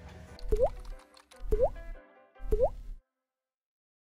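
Three cartoonish water-drop 'bloop' sound effects about a second apart, each a quick rising pitch over a low thump, with faint music underneath. The sound cuts off suddenly about three seconds in.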